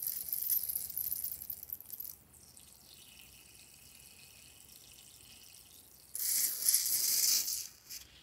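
Liquid squirting out of a squeezed balloon's nozzle into a dish of foamy mixture, heard as two hissing spurts: one in the first two seconds and another from about six seconds in to near the end, as the balloon is emptied.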